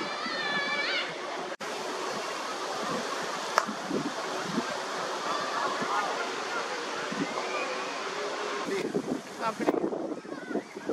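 Steady wind rushing on the microphone over distant shouts and voices of cricket players, with a single sharp knock about three and a half seconds in.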